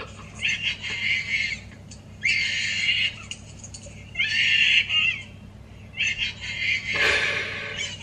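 A woman crying: high-pitched sobbing wails of about a second each, coming every couple of seconds.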